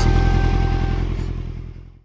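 Kawasaki Ninja 1000's inline-four engine idling steadily, fading out over the last second.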